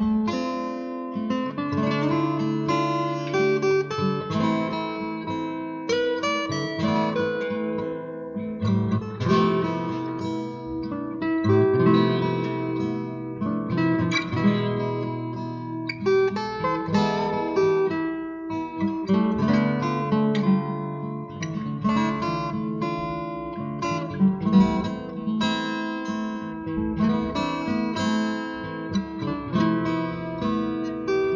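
Acoustic guitar music: a steady stream of picked notes and chords.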